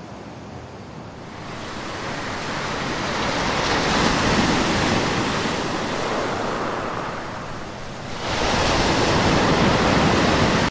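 Sea surf washing and breaking, with wind on the microphone. The rush swells over several seconds, eases off, then jumps suddenly louder about eight seconds in.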